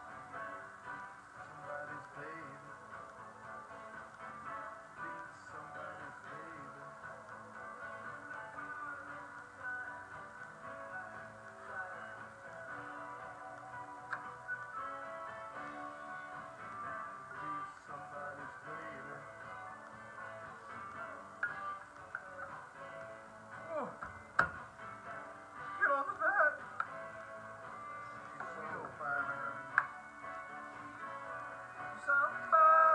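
Background music playing steadily, with a sharp knock about 24 seconds in.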